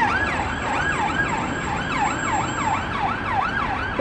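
Emergency vehicle siren sounding a fast yelp, its pitch rising and falling about three times a second.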